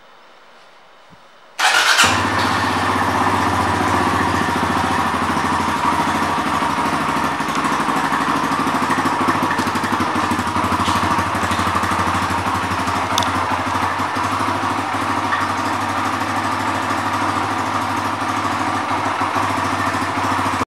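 Kawasaki KLX140G's air-cooled single-cylinder four-stroke engine starting suddenly about a second and a half in, then idling steadily.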